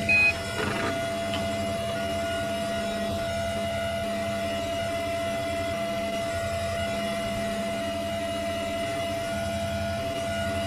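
A Windows system sound heavily distorted by stacked audio effects, turned into a steady droning hum with several held tones. A short, louder high beep comes about a quarter of a second in.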